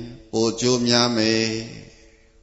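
A Buddhist monk chanting in a man's voice, one phrase held on a steady pitch. It starts after a short breath a moment in and fades out near the end.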